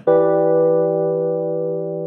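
A single keyboard chord, a G major triad over a low E bass note, struck once and held for about two seconds before it stops. Together the notes sound as an E minor seven chord rather than a major one.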